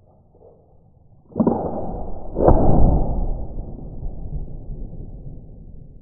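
.45-calibre Pennsylvania flintlock pistol firing in two stages. About a second and a half in, the priming flashes in the pan with a sudden rush. About a second later the main charge goes off in a louder report that dies away over the next few seconds.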